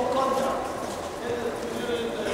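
Indistinct voices of several people talking at once, with soft footfalls on the gym mats.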